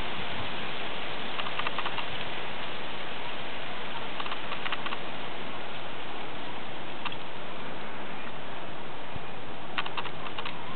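A steady hiss with a few small clusters of faint clicks, about one and a half seconds in, around four to five seconds, near seven seconds and near the end.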